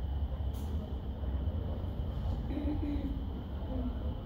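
Room tone in a lecture room: a steady low rumble with a thin, faint high whine, and a faint, brief voice-like sound about two and a half seconds in.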